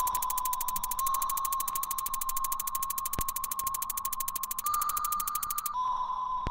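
A steady, high electronic whine that steps slightly up and down in pitch, with a fast, even buzzing over it that stops abruptly near the end; a faint click about three seconds in.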